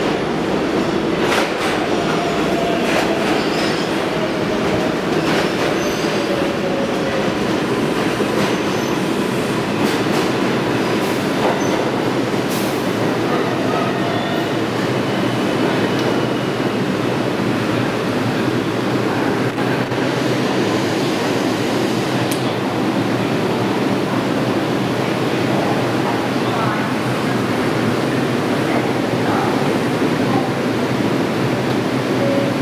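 New York City Subway R142A cars of a 6 train pulling into a station platform. A loud, steady rumble of wheels on rail, with clicks over the rail joints in the first few seconds and a faint falling whine as the train slows to a stop.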